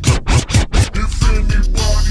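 Chopped and screwed hip hop: the slowed-down track stutters in a quick run of about five short repeated cuts in the first second, then the slowed beat and vocals run on.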